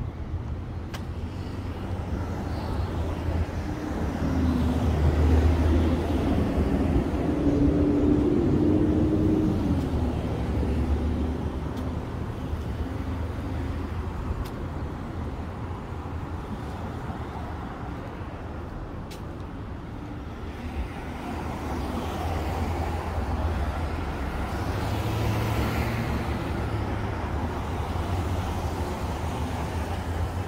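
Road traffic at a street intersection: cars passing over a steady low rumble. One vehicle's engine swells loudly for several seconds about four seconds in, and another passes about two-thirds of the way through.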